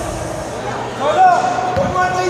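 Sounds of an indoor basketball game: a basketball bounces once on the hardwood court near the end, amid players' voices and court noise.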